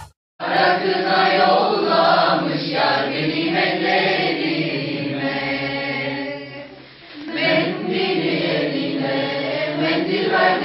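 A mixed group of teenage voices singing together from song sheets, slow and with long held notes. It starts after a brief silence, fades at the end of a phrase about seven seconds in, and then the group starts the next phrase.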